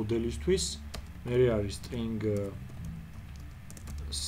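Typing on a computer keyboard: scattered keystroke clicks. A man's voice speaks a few short phrases over it.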